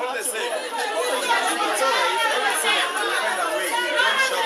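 A crowd of people talking over one another at once, many overlapping voices without one clear speaker.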